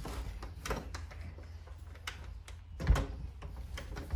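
Clicks and knocks of a door's knob and latch being worked by hand as someone tries to get a locked door open, with a louder knock about three seconds in, over a low hum.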